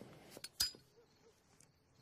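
A sharp, short metallic click with a brief ring about half a second in, preceded by a couple of fainter clicks, then quiet.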